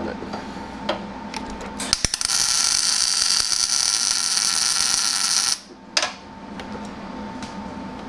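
MIG welder tacking a chassis tube: a couple of clicks as the arc strikes about two seconds in, then a steady hiss from the arc for about three and a half seconds that cuts off suddenly. A single sharp knock follows about half a second later.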